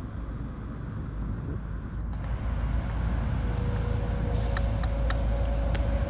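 Steady low outdoor rumble with no clear source. A faint steady hum joins it about halfway through, and light ticks begin near the end.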